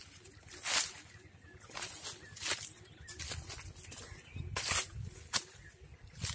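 Footsteps crunching through dry fallen leaf litter, a short crackle about once a second at an uneven pace.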